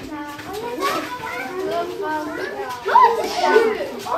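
Many children's voices chattering and calling out at once, overlapping and unintelligible. A louder shout comes about three seconds in.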